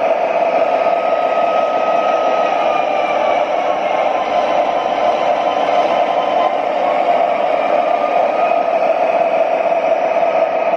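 Sound system of an MTH Premier O gauge BNSF ES44 diesel locomotive model playing a steady diesel engine drone through its small onboard speaker, a loud, hissy, unchanging sound, as the train runs along three-rail track.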